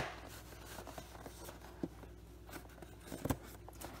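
Faint scratching and a few small clicks of a fingernail picking at the glued end flap of a cardboard food carton, trying to work it open.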